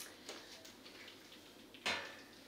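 Light handling of plastic equipment on a table: small clicks and rustles, then one sharp knock near the end as the plastic chest drain unit is handled.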